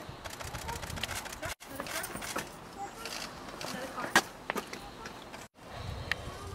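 Outdoor street sound with scattered sharp clicks, the loudest about four seconds in, over faint indistinct voices. The sound cuts out briefly twice.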